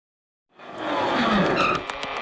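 Vehicle tyres skidding and squealing, fading in about half a second in.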